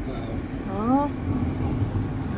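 A car's steady low road and engine rumble, heard from inside the moving car, with a short rising voice call a little under a second in.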